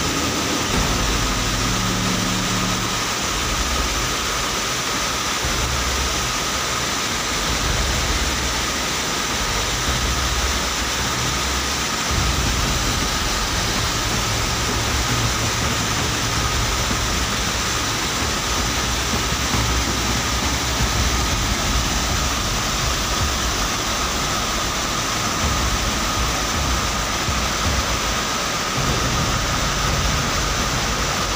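Muddy floodwater from a flash flood rushing through a village: a loud, steady rush with an uneven low rumble underneath.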